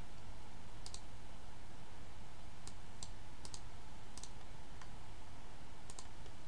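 Light clicking at a computer, about eight sharp clicks spaced irregularly, over a steady low hum of room noise.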